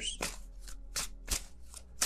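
A deck of tarot cards being shuffled by hand: a quick series of short card-on-card clicks, about three a second.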